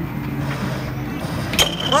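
One sharp clack of an air hockey puck being struck, about one and a half seconds in, over a steady low arcade hum.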